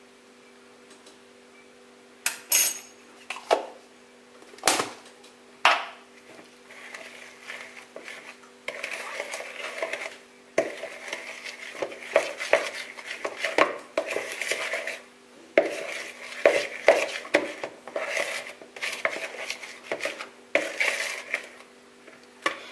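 A metal spoon knocks a few times against a plastic mixing bowl, then stirs and scrapes quickly and continuously through a thick batter of egg and powdered milk, mixing in baking powder. A faint steady hum runs underneath.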